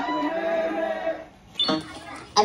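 Film soundtrack music heard through a cinema's speakers: a few held notes that fade out just past a second in, followed by a short burst of film dialogue near the end.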